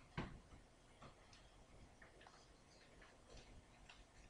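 Near silence with room tone: one soft knock just after the start, then faint, scattered ticks.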